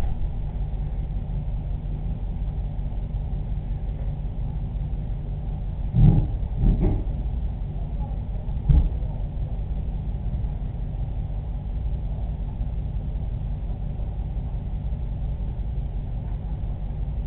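A steady low rumble, with three short knocks near the middle: two close together, then a third about two seconds later.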